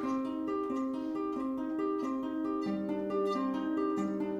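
Celtic lever harp played solo: a flowing, repeating pattern of plucked notes ringing over one another, with a lower bass note joining about two and a half seconds in. It is the instrumental introduction to a slow folk song.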